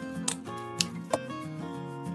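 Soft background music with steady held notes, over which a handheld stapler makes a few sharp clicks in the first second or so as it staples folded satin ribbon.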